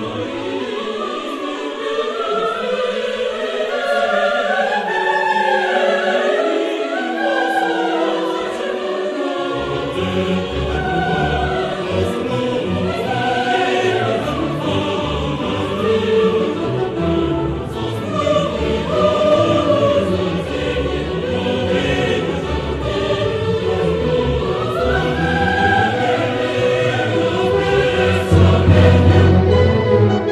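Operatic choral music: a choir singing with orchestral accompaniment, the low bass part coming in about ten seconds in.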